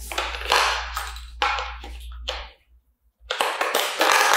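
Plastic handling noise as AA batteries are fitted into a trash can lid's battery compartment: rustling and scraping, then after a short gap a quick run of small clicks and taps.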